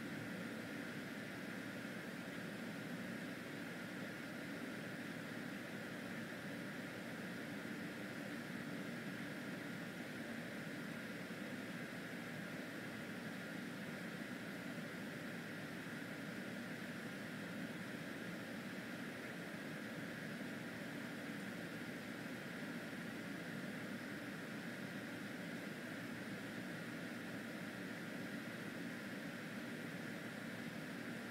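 Steady fan hum and hiss of room air-handling equipment, even throughout with no distinct events.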